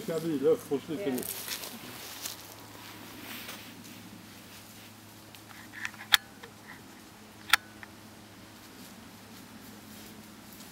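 A voice for about the first second, then quiet outdoor background with a faint steady hum and two sharp clicks about a second and a half apart.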